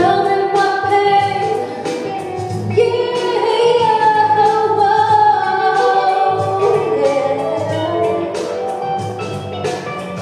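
A woman singing into a handheld microphone, holding long wavering notes over instrumental backing music.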